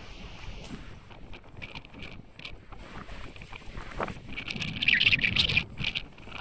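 Wind buffeting the microphone on the open deck of a ship at sea, a gusty rushing that swells louder in the second half.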